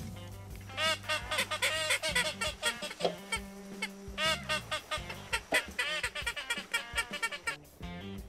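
Duck quacking in quick runs of short, arched calls, starting about a second in and stopping just before the end, over background music with a steady bass line.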